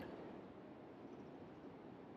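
Near silence: faint, steady hiss of the recording between the narrator's remarks.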